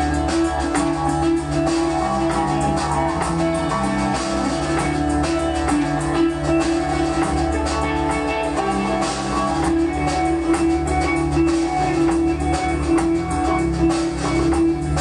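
Live band playing: guitars with sustained notes over changing bass notes, and a drum kit keeping a steady beat.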